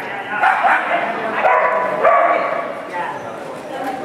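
Dogs barking and yipping again and again, over a background of voices.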